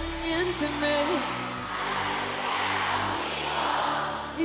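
A sung note held over the music ends about a second in, then a large concert crowd cheers and screams, growing louder, over a sustained backing chord.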